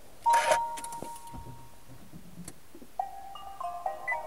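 Nissan Leaf powering on. About a third of a second in there is a short noisy burst and a beep held for about a second. From about three seconds the car's start-up chime begins, a short melody of electronic tones stepping up and down in pitch.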